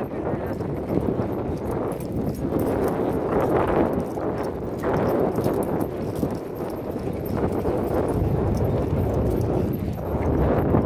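Hooves of a ridden horse clip-clopping along a dirt and grass track at a walk, with wind buffeting the microphone.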